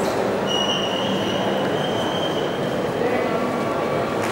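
Steady noise of a large indoor hall, with a thin high-pitched squeal that starts about half a second in and lasts about two seconds.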